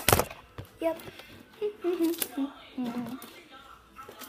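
A loud thump right at the start, then a few light knocks and rubbing as the phone is handled close to its microphone, under a child's soft voice.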